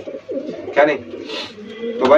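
Domestic pigeons cooing, with low, wavering calls.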